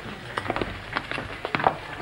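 Footsteps of several people walking down steep cobbled steps: irregular clicks and scuffs of shoes on stone, a few a second, with no steady rhythm.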